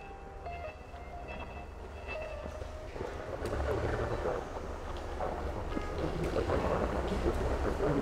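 Soft background music trailing off over the first few seconds, then a growing wash of room noise in a large warehouse, with faint irregular footsteps on the concrete floor.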